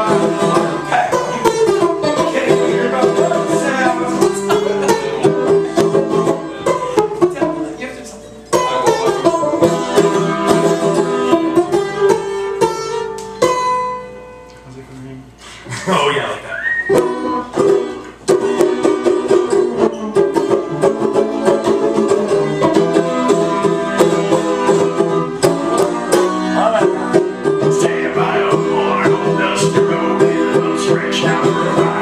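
Banjo played live, a quick picked tune that drops out briefly about eight seconds in, thins to a quiet stretch around the middle, then picks up again.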